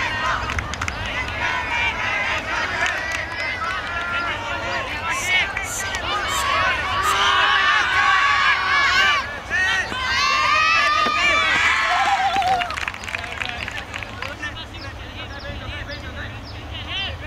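Many voices of players and sideline teammates shouting and cheering over each other during a point, getting louder and denser in the middle, then dying down near the end. A steady low rumble of wind on the microphone runs underneath.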